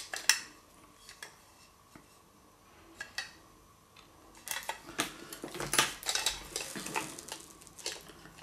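Clicks and light clatter of hard plastic shaver parts being handled: the gear housing and motor unit knock and tap together in the hands. There is one click at the start, a quiet stretch with a few faint ticks, then a busy run of clicks from about halfway on.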